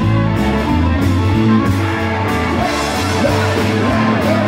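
Live rock band playing loud.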